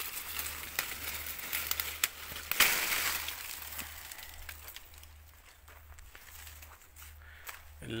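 Mango leaves and twigs rustling and crackling against the phone as it is pushed through a tree's foliage, with many sharp little cracks. The loudest rush of rustling comes about two and a half seconds in, then it fades to scattered crackles.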